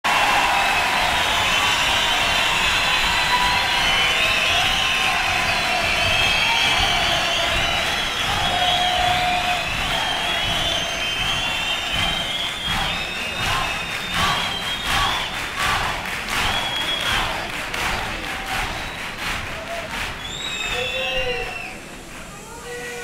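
Theatre audience cheering and shouting. About halfway through, scattered hand-clapping in a loose rhythm joins in.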